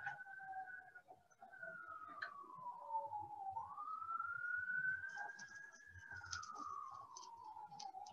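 A faint siren wailing, one tone sliding slowly down and up in pitch over several seconds.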